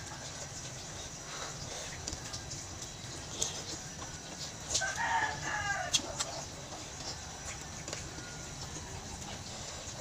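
Spoon clicking against a plate and teeth while eating noodle and meatball soup, with chickens clucking in the background. A short, falling chicken call comes about five seconds in, and the sharpest spoon click comes just after it.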